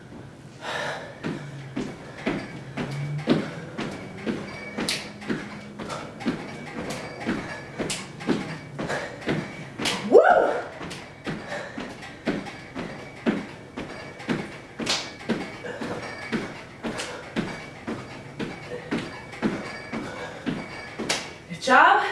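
Jumping jacks: sneakers landing on a hardwood floor in a steady rhythm of thumps, about two a second. About ten seconds in, a short rising vocal sound.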